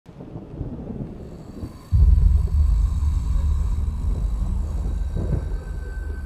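A deep low rumble that starts suddenly about two seconds in, then slowly eases off.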